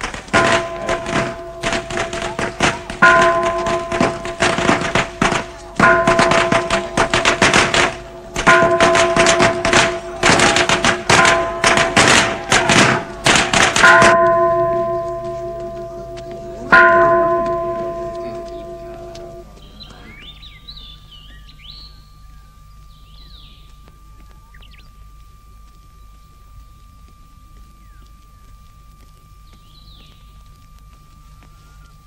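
Film soundtrack: rapid, dense percussive strikes with a deep bell or gong struck about every three seconds. The rapid strikes stop about 14 seconds in, and two last bell strikes ring out and fade over the next few seconds. After that come faint high chirps over a faint steady tone.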